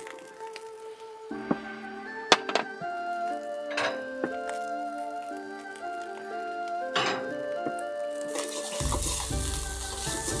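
Background music with a few light knocks under it, then from about nine seconds in, fried rice in a wok starts sizzling hard over high heat as it is stirred.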